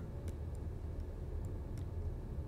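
A few faint, scattered ticks over a steady low hum: a stylus tapping on a tablet screen while writing short annotations.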